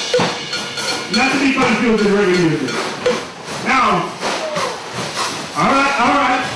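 Voices giving long, falling calls over live band music as the drum-kit playing winds down.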